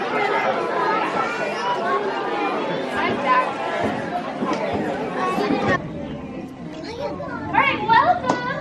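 Crowd chatter: many voices of the watching audience talking over one another in a large room. The chatter drops off suddenly about six seconds in, leaving quieter voices.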